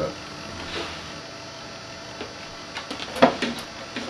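Low steady room tone, broken by two brief clicks or handling knocks a little after three seconds in.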